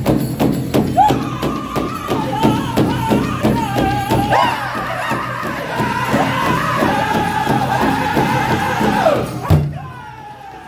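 Powwow drum group performing a Chicken Dance song: several singers strike a large hide-covered powwow drum in unison in a steady quick beat, about four strikes a second, under high-pitched group singing. A lead voice starts the song and the others join in. The song breaks off near the end with one last hard hit on the drum.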